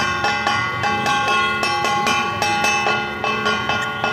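Temple bells ringing during a puja, struck rapidly about four times a second, with many overlapping metallic tones that keep ringing between strikes.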